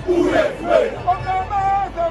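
Zulu regiment men chanting a war cry together, with two loud group shouts in the first second, then a single voice holding a high call.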